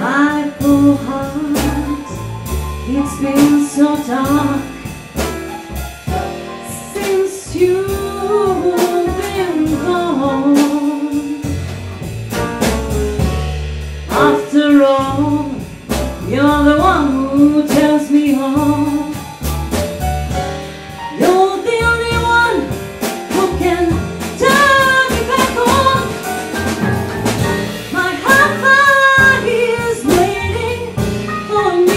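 Live jazz quartet playing: grand piano, double bass and drum kit, with a woman's voice singing a wordless line over them.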